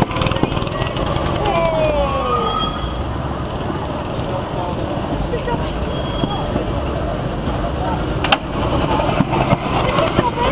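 Go-kart engines running as karts circle and pass the track, a steady rumble, with people's voices in the background and a single sharp click near the end.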